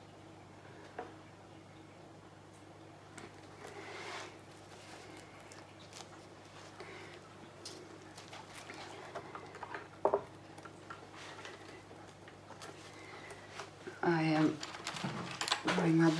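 Quiet room tone with a steady low hum and a few faint clicks and handling noises. A voice comes in near the end.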